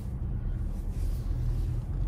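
Steady low rumble of a car's engine and tyres heard inside the cabin as it moves slowly.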